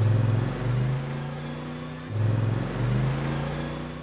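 Polaris RZR side-by-side UTV engine running and revving, swelling twice about two seconds apart.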